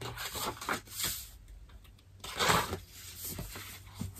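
Paper rustling as a hardcover book is opened and its first pages are turned, with the loudest rustle about two and a half seconds in.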